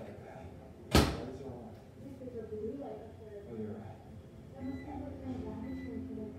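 A built-in microwave oven door shut with a single sharp clunk about a second in. Two faint short beeps follow near the end.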